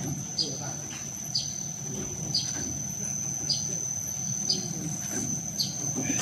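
Automatic baozi (stuffed steamed bun) forming machine running: a low motor hum under a steady high-pitched whine, with a short high chirp repeating about once a second.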